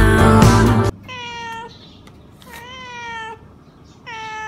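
Background music that cuts off suddenly about a second in, then a domestic cat meowing twice, the second meow rising and then falling in pitch.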